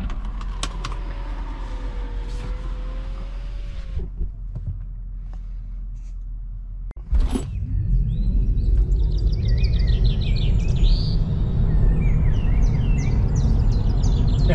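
Low, steady road and tyre rumble of a Tesla Model 3 under way, heard inside the cabin with no engine note. It grows louder about halfway through, and short high chirps sound over it.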